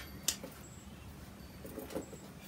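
Quiet pause: faint low room hum with a single soft click shortly after the start.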